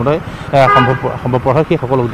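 A vehicle horn gives a short toot about half a second in, over a man speaking.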